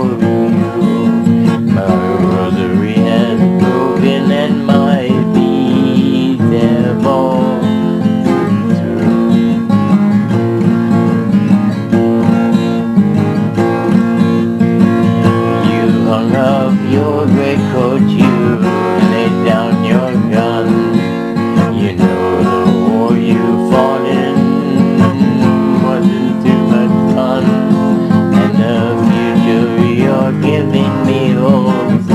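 Acoustic guitar, strummed and picked, playing a song accompaniment without a break.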